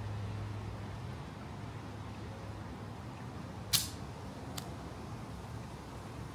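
Champagne cork being eased out of the bottle by hand, opened slowly rather than popped: a quiet stretch of twisting, then a single short pop a little past halfway through, and a fainter click under a second later.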